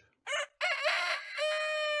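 A recording of a rooster crowing once: a short opening note, then a long cock-a-doodle-doo that ends on a steady held note and stops just after two seconds.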